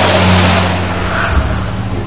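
Car driving-off sound effect: a car engine running with a rushing noise that slowly fades away.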